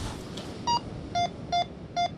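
Minelab Go-Find 66 metal detector beeping as its coil passes over a buried target: one higher beep, then short lower beeps a little under three a second. This is the detector's target signal, which its display reads as a ring.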